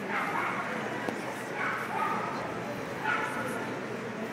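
A dog barking: three short barks about a second and a half apart, over the murmur of a crowd of voices.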